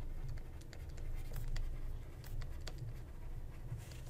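A stylus writing by hand on a pen tablet, with light scratches and faint irregular taps as the strokes of the words go down.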